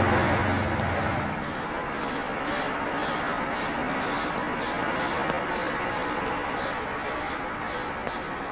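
A low steady hum that cuts off about a second in, over a steady noisy background with indistinct voices.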